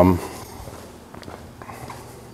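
A man's drawn-out "um" trailing off at the very start, then a few faint footsteps as he walks across the room.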